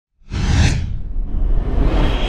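A produced whoosh sound effect over a deep low rumble, starting suddenly a fraction of a second in; the high swish fades within about a second while the low rumble carries on.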